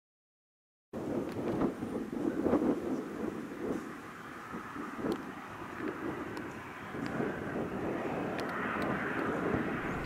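Outdoor background noise: a low, uneven rumble that swells and eases, starting about a second in, with a few faint clicks.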